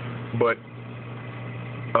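Steady low hum of running aquarium equipment under the refugium, continuous and unchanging, with one short spoken word about half a second in.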